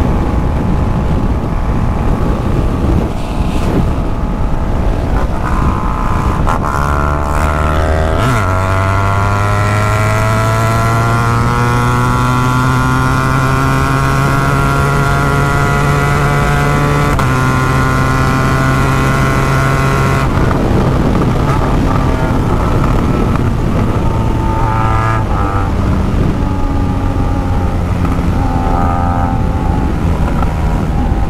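BMW R1200 GS Adventure's boxer twin under hard acceleration on the highway, its note rising steadily for about ten seconds up to around 190 km/h. A gear change near the top briefly drops the pitch, and about two-thirds of the way through the throttle is rolled off and the note falls to a lower steady drone. Wind rushes over the microphone throughout.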